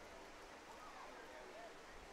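Near silence: faint stadium background with a few distant, indistinct voices.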